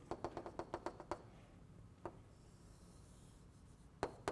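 Chalk tapping and scraping on a blackboard as a circle is drawn: a faint, quick run of about eight short taps in the first second, then one more about two seconds in.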